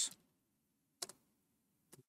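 Two short, sharp clicks about a second apart, typical of keystrokes on a computer keyboard.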